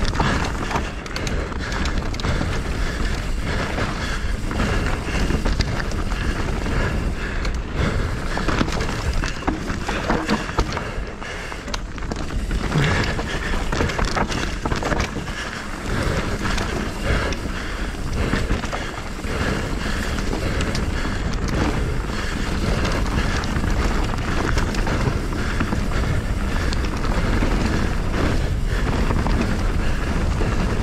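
Mountain bike rattling over a rough dirt trail at speed, with steady wind buffeting the microphone and many small clatters from the frame and tyres.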